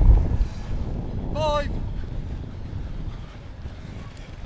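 Wind buffeting the microphone, a low rumble that is heaviest in the first half second and then eases off. A short, high shouted call comes about a second and a half in.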